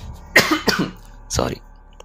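A person coughing: three short coughs in just over a second.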